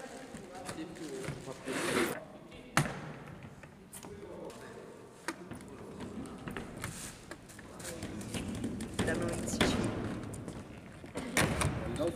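A voice making sounds with no clear words, over handling noises and soft thuds, with one sharp knock about three seconds in.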